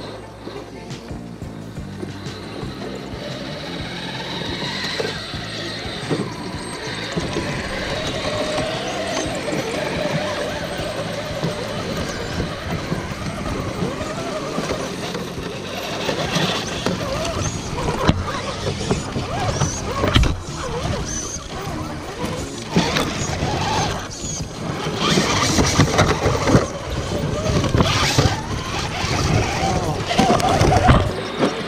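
Electric RC scale rock crawler picking its way over boulders: its motor and geartrain whine, rising and falling with the throttle, while its tyres scrape and crunch on stone. The crunching grows louder in the second half as the truck closes in.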